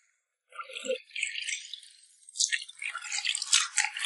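Water splashing and squelching in a stainless steel basin as gloved hands scrub and knead pieces of beef tripe. It starts about half a second in and becomes a busy run of short splashes in the second half.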